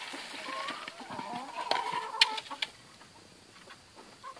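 Hens clucking, with a few drawn-out calls, over the rustle of a plastic bag and the hiss of dry grain pouring into a plastic bucket. Most of the sound dies away after about three seconds.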